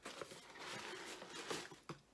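A cardboard shipping box and its paper packing material being handled, a soft rustling with small taps and scrapes, with a few sharper ticks in the second half.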